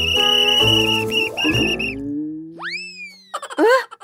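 Cartoon sound effects over light children's music: a slow rising glide, then a sharp boing-like sweep up about two and a half seconds in that trails off downward.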